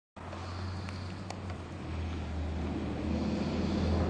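Car engine running outdoors with a steady low hum, growing a little louder in the second half; a few faint clicks about a second in.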